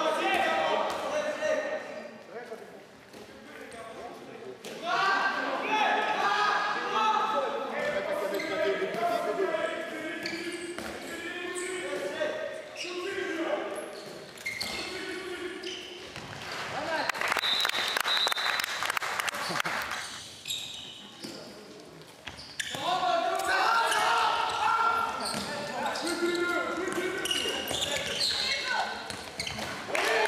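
Voices shouting in a large, echoing sports hall, with a handball bouncing on the court floor. About sixteen seconds in, a few seconds of loud, even noise rise up, then the shouting goes on.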